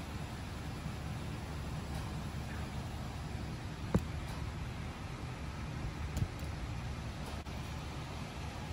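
Handling noise of a phone camera and tripod being repositioned, with one sharp click about four seconds in, over a steady low background hum.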